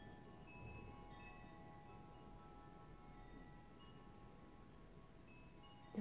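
Faint ringing chime tones: several held notes at different pitches sounding one after another and overlapping, over a faint low hum.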